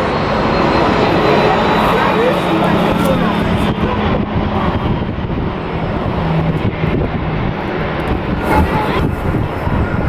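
Airbus A319-112's jet engines at taxi power: a steady rushing roar with a low hum and a faint high whine.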